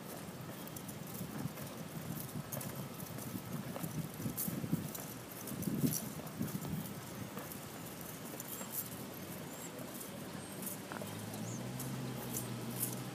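Footsteps of a small group of people walking on asphalt, an irregular run of light steps and clicks.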